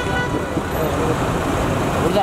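Road traffic noise with a crowd of overlapping voices calling over it; a held horn tone fades out just after the start.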